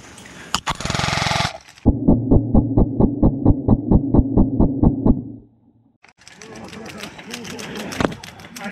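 XM177E1 electric airsoft gun firing a short full-auto burst of about a second. The burst is then heard slowed down, each shot a separate deep knock, about four or five a second for some three seconds. A rustling noise in dry brush follows near the end.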